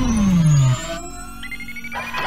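Synthesized sci-fi title sound effects. A deep falling sweep with a low rumble cuts off about three quarters of a second in. Quieter electronic tones then glide slowly upward over a steady low hum.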